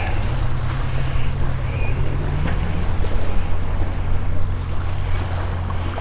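Sailing catamaran under way at night: a steady low hum with a constant wash of wind and water noise.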